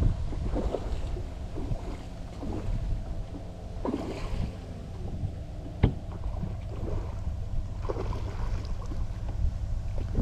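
Wind rumbling on the microphone over water moving against a small boat's hull, with one sharp knock a little before the middle.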